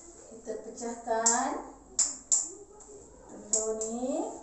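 A metal spoon tapping an egg to crack the shell: two sharp taps about two seconds in, close together.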